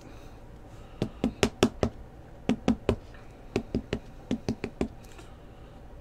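Sharp clicks and taps of a clear hard plastic trading-card case being handled as a card is fitted into it, coming in short clusters of a few clicks each.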